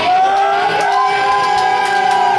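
Live rock band playing in a small club, carrying one long held note with a couple of brief pitch bends, over audience crowd noise.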